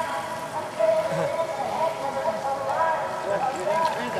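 Indistinct, distant speech over outdoor background noise, with no clear sound of the bikes or other activity.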